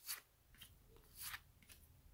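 Faint, brief rustles of cardboard trading cards being slid off a hand-held stack, once at the start and again a little past a second in, with a few tiny ticks between.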